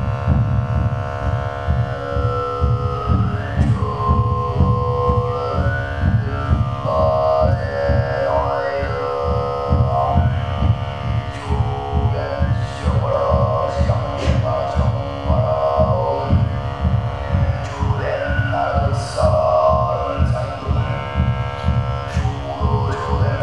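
Overtone throat singing into a microphone: a low, rapidly pulsing vocal drone with a whistling overtone melody gliding up and down above it.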